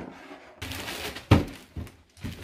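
Plastic packaging rustling as a bagged plastic pen is lifted out of a cardboard box, with one sharp thump a little over a second in.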